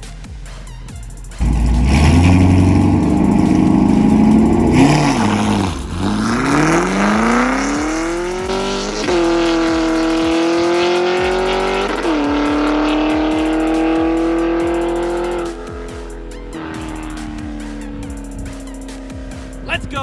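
Chevrolet Camaro SS 1LE's V8 launching hard off the line and accelerating away, the engine note climbing through the gears with shifts about nine and twelve seconds in before the driver lifts off near the end.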